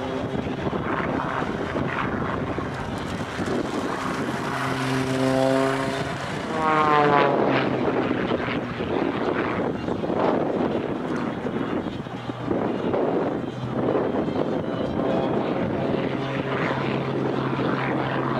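Extra 330XS aerobatic plane's piston engine and propeller running through a display, the sound swelling and fading as it manoeuvres, with its pitch sliding down about seven seconds in.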